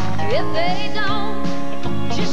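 A country song played by a band, with guitar, and a melody line that wavers and slides in pitch.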